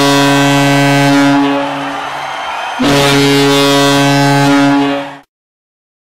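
Ice hockey goal horn sounding two long, deep blasts, the second cutting off about five seconds in.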